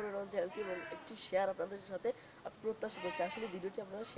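Speech only: a boy talking in Bengali.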